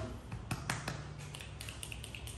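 A few light clicks, three close together about half a second to a second in, then fainter ones, over quiet room tone.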